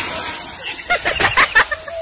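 Voices of a group of people pushing a bus by hand, with a few short shouts about a second in, over a steady hiss of street noise.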